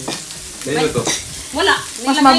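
Meat and shrimp sizzling on a hot electric grill pan as tongs turn them, a steady frying hiss, with short bits of voices about a second in and near the end.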